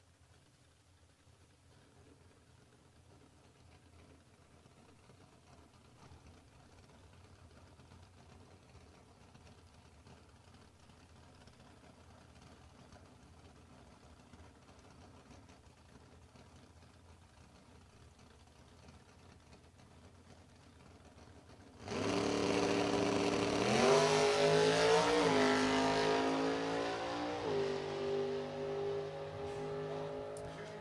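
Drag-racing car engines launching suddenly at full throttle after a long stretch of faint low hum, loud, with the engine pitch climbing and dropping back twice as they accelerate away down the strip, then fading.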